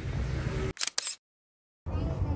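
Camera shutter sound: a quick double click about a second in, over low shop background noise.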